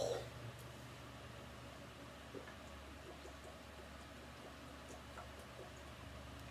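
A few faint gulps and swallows as a person chugs soda from a 2-liter plastic bottle, over a steady low hum.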